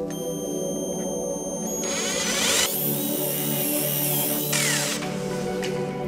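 Handheld power drill with a twist bit boring a hole through a thin wooden board: the motor whines for about three seconds in the middle and winds down near the end, over background music.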